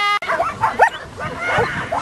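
Dogs yipping and barking excitedly, many short high yelps overlapping one another.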